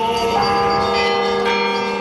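Church bells ringing: several steady tones held together, with a fresh strike adding more tones about half a second in.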